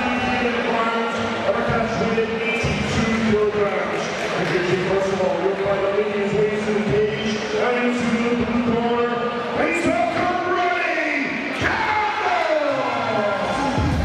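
A ring announcer's voice over a hall PA system, with long, drawn-out syllables that are held and then glide up and down in pitch.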